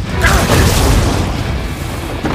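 Loud, rumbling boom of an animated battle sound effect, swelling about a quarter second in, with music underneath.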